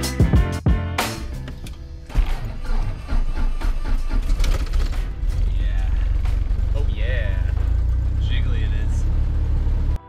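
Knocks and thumps of people climbing into a small aircraft's cockpit, then from about two seconds in a loud steady low rumble, with background music over it.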